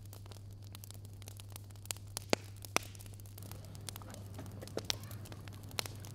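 A dog eating a small piece of grilled chicken: a few sharp, separate chewing clicks over a steady low hum, bunched about two seconds in and again near the end.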